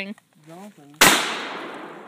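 A single gunshot from a shoulder-fired long gun about a second in: a sharp, loud crack followed by an echo that dies away over the next second.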